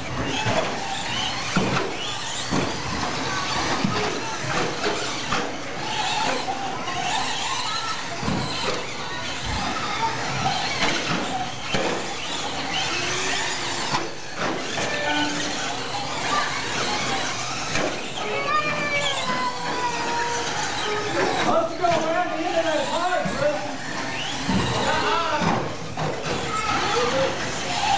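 Electric 1/10-scale 2WD short-course RC trucks racing, their motors whining up and down in pitch, over a steady murmur of voices in a large hall.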